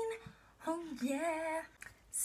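A woman singing without accompaniment: a held note ends just after the start, and after a short pause comes a sung phrase of about a second with a wavering pitch.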